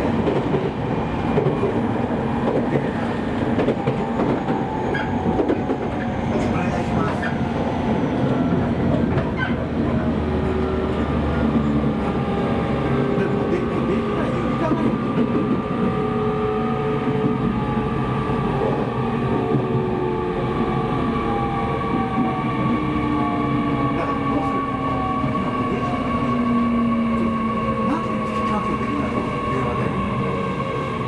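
Running sound of an E501 series electric train heard inside the car: steady wheel and rail noise with the whine of the traction motors and inverter. Over the second half the whine falls in pitch as the train slows.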